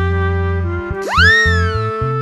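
Children's background music with a cartoon sound effect about a second in: a pitch that sweeps quickly up and then glides slowly back down.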